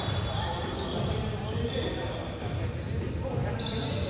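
Basketball play on an indoor gym court: the ball bouncing on the wooden floor, with voices in the hall and a few short high squeaks.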